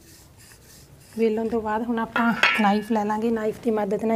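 A woman speaking from about a second in, with a brief metallic clink of a knife against a steel plate partway through.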